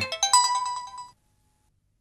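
Mobile phone text-message alert: a quick melody of short, bright electronic notes lasting about a second.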